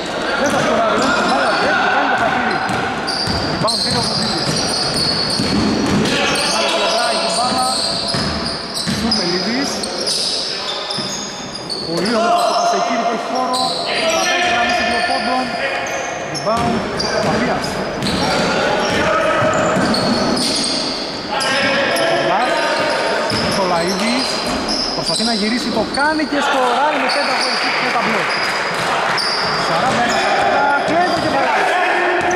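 A basketball bouncing on a hardwood gym floor during live play, with players' shoes squeaking in short chirps, all echoing in a large sports hall.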